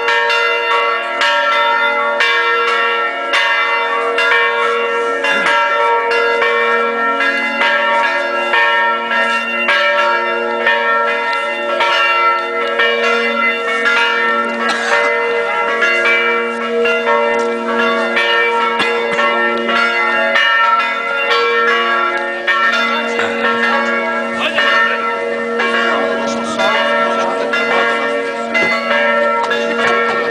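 Church bells ringing, struck rapidly and repeatedly so that their tones overlap and ring on throughout.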